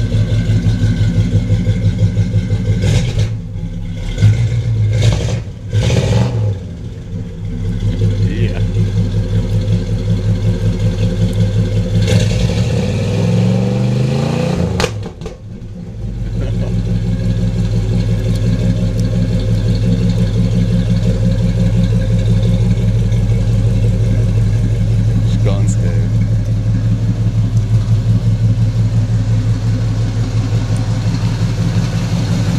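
1974 Chevrolet Monte Carlo's 350 cubic-inch V8 idling through a true dual exhaust with Flowmaster Super 44 mufflers and no catalytic converter. There are a few quick throttle blips about three to six seconds in. About twelve seconds in comes a longer rising rev, which drops back to a steady idle.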